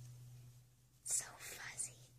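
Faint whispering about a second in: a few short breathy strokes, over a low steady hum.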